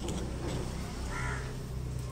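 A bird calls once, about a second in: a single call of about half a second. A low steady background rumble runs under it.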